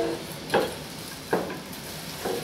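Hands kneading a raw mixture of ground beef and pork with egg, onion and panko breadcrumbs: two short wet squelches, about half a second and about a second and a half in.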